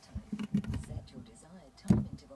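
A run of light clicks and taps like typing on keys, with a louder knock near the end. A faint voice murmurs underneath.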